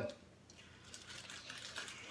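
Faint crinkling and small clicks of a plastic bag of marshmallows being handled as marshmallows are taken out.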